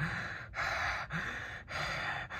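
A person breathing hard and fast, about two heavy, noisy breaths a second, an angry huffing.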